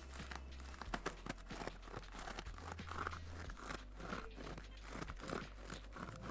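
A frozen slushy squeeze cup worked by hand, its soft base squished again and again: faint crackling and crunching as the peach juice inside freezes into slush.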